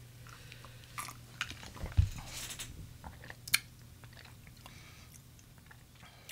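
A person sipping a cocktail from a glass and tasting it: faint mouth and swallowing sounds, with a few small clicks and a soft knock.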